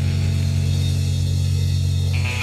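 Instrumental passage of a rock song: a low chord held and ringing while its brighter upper sound dies away.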